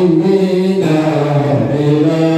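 A man chanting an Islamic prayer into a microphone, holding long melodic notes that step from one pitch to the next.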